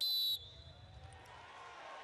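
A field hockey umpire's whistle: one short, sharp blast at the very start, confirming the penalty stroke award. A low murmur of the ground follows.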